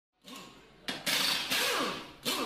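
Produced sound effect for the channel's logo: a noise fades in, then three sharp hits in quick succession, each trailing a swoop that falls in pitch.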